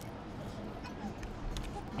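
Low, steady background ambience of an outdoor café patio, with faint distant voices of other diners.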